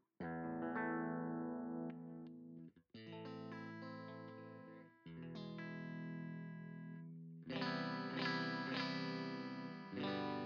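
Eight-string electric guitar through an amp-simulator plugin's clean channel, with a very sterile clean tone. Four chords are struck, one at the start and then about three, five and seven and a half seconds in, and each is left to ring.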